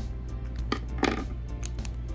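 Small foil blind-bag packet crinkling and rustling as it is pulled open by hand, with a few light clicks and a soft knock about a second in. Quiet background music plays under it.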